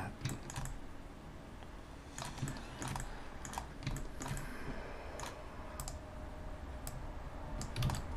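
Computer keyboard keys and mouse buttons clicking, in scattered, irregular presses.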